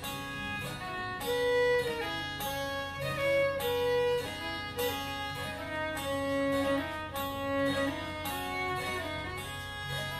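Fiddle and acoustic guitar playing a tune together, the bowed fiddle holding and changing notes over strummed guitar chords.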